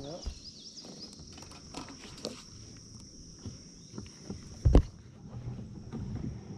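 Insects drone steadily at a high pitch throughout, over scattered small knocks and rustles of movement in a kayak. One loud, dull thump comes about three-quarters of the way in.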